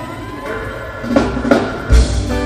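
Live reggae band kicking off a song: a few drum hits lead in, then a heavy low bass-and-kick hit near the end brings in the full band.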